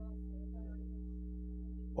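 A soft, steady held chord of several sustained tones over a constant low hum, in a pause between spoken phrases.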